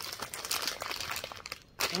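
Thin plastic snack wrapper crinkling as hands work it open, a dense run of crackles that stops just before the end.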